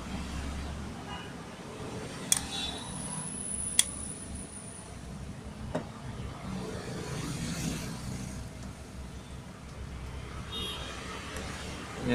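A plastic power bank case being handled, giving a few small sharp clicks, over a low steady background rumble.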